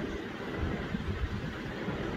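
Steady background noise between words: a low, uneven rumble with a light hiss above it, as of traffic or a running machine heard through the room.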